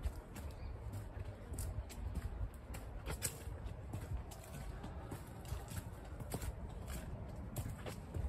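Footsteps on a dirt and grass garden path, about two steps a second, over a steady low rumble on the microphone.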